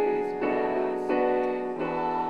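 Small mixed-voice choir singing a slow song in sustained chords with piano accompaniment, the notes moving together about every half second.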